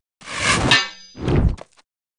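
A sound-effect metallic clang that rings for a moment and dies away, followed about a second later by a duller thump.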